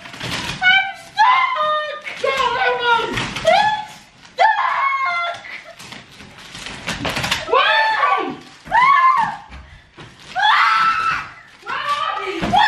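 Young women screaming and squealing in a string of high cries whose pitch slides up and down, in disgust at a stink bomb's smell.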